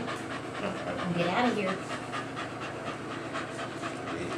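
A dog panting in quick, rhythmic breaths.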